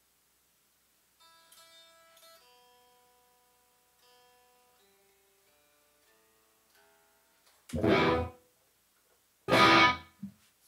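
Electric guitar being tuned: soft single notes ring and fade one after another, then two loud strummed chords near the end.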